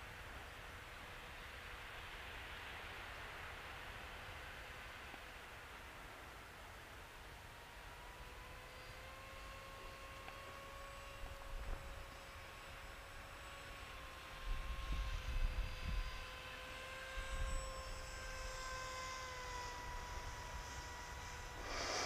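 Faint steady whine of a Volantex Ranger 1600 motor glider's electric motor and folding propeller in flight, heard at a distance. The pitch rises a little about ten seconds in as power is added and falls back near the end. Low gusts of wind on the microphone come a few times in the second half.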